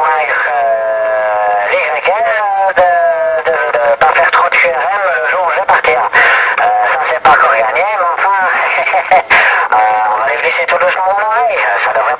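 A voice coming in over a CB radio through the transceiver's speaker. It sounds thin, with the low end cut off, and short clicks of static run through it.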